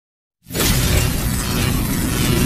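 Video intro sound effect: after a brief silence, a sudden loud burst of dense noise, deep bass and hiss together, starts about half a second in and carries on steadily.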